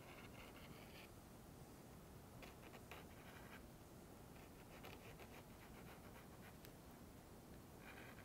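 Faint scratching of a paint pen's felt tip drawing on wood, in several short strokes with pauses between.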